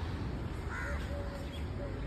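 A crow cawing once, about a second in, with fainter distant calls after it, over a steady low rumble of background noise.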